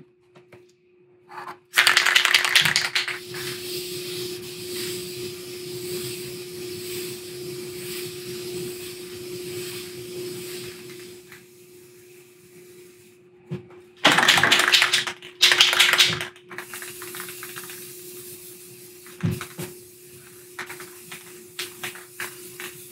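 Aerosol spray can of gloss clear coat: its mixing ball is rattled hard, then a long steady spray hiss of about eight seconds fades out, followed by two more short bursts of rattling shakes. A steady low hum runs underneath.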